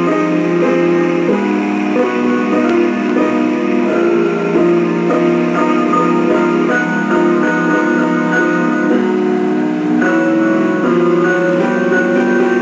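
Grand piano being played: a slow instrumental piece of sustained, overlapping notes in the middle register, at a steady level.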